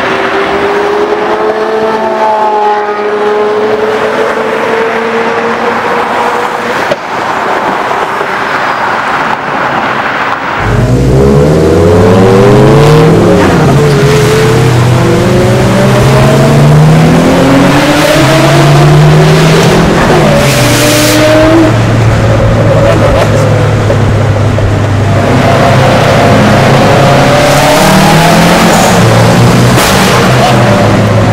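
Sports car engines: first one engine held at steady, slowly climbing revs, then about a third of the way in a louder car accelerating hard through several gears, each gear a rising pitch that drops at the shift, before settling into a steady, low drone at cruising speed.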